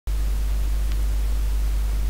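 Steady low hum with an even hiss over it: the background noise of the recording, with no other sound of note.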